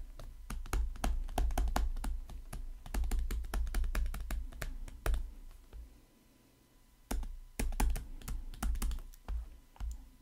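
Stylus tapping and scratching on a tablet screen during handwriting: a run of light clicks and soft knocks, with a pause of about a second past the middle.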